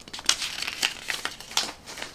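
Torn-up paper score reports handled and shuffled by hand: a string of short paper crinkles and rustles.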